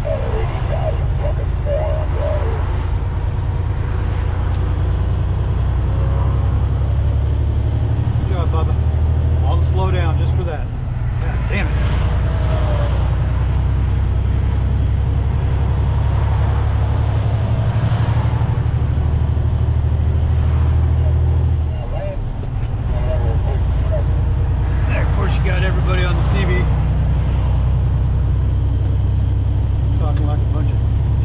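Semi-truck cab at highway speed: a steady low engine and road drone that dips briefly twice, about a third and two-thirds of the way through. Over it come bursts of CB radio voices.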